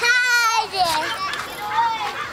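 Toddler on a swing squealing with excitement: one long high-pitched squeal at the start, then shorter excited cries.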